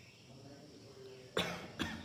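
A person coughing twice in quick succession near the end, the two coughs less than half a second apart.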